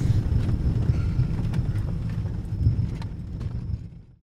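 Inside a pickup truck's cab, driving slowly over a rough, rutted forest track: a heavy low rumble with irregular knocks and rattles as the truck bounces. The sound fades out at the end.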